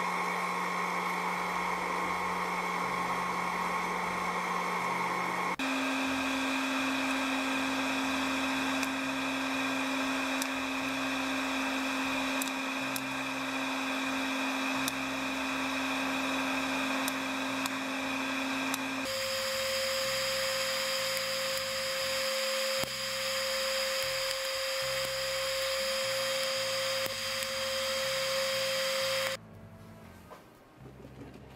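Hair-dryer-powered popcorn maker running: a steady rush of blown hot air with a motor whine whose pitch jumps abruptly twice. A few faint clicks come through in the middle as kernels pop. The blowing stops suddenly just before the end.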